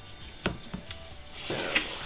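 A wooden slab soap mold being handled on a stainless steel table: a few light wooden knocks in the first second, then a longer rasp near the end as it is tipped up onto its end.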